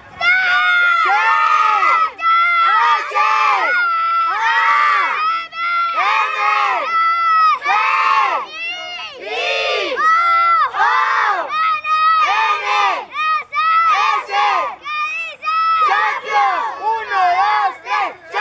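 A group of young boys shouting a team battle cry together in a rhythmic chant, loud high-pitched shouts about one a second, each rising and falling in pitch.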